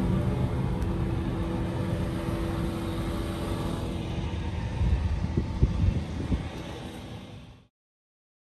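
A steady mechanical hum over a low rumble, with a few soft knocks about five to six and a half seconds in; it cuts off suddenly near the end.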